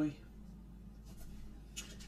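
Faint rubbing and sliding of tarot cards being handled, in a few soft scrapes about a second in and near the end, over a low steady hum.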